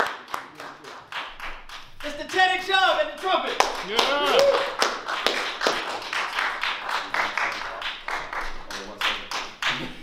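Hand claps, sharp and several a second, with people's voices calling and talking over them.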